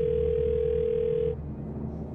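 Telephone ringback tone heard over the phone line: a steady single-pitched ring that stops about a second and a half in. The call is going unanswered, through to voicemail.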